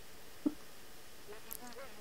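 Faint steady background hiss in a pause between speech, with a single short click about half a second in and a faint, distant-sounding voice murmuring near the end.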